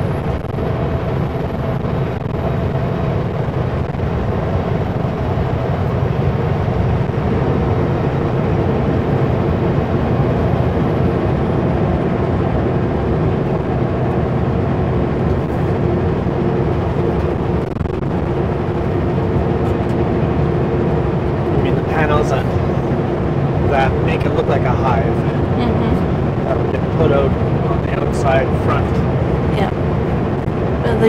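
Kenworth W900L semi truck heard from inside the cab while driving: a steady engine drone with road noise that holds an even level throughout.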